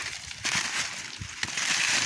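Dry fallen leaves crunching and rustling as the leaf litter is disturbed, in two spells: one about half a second in and a louder one near the end.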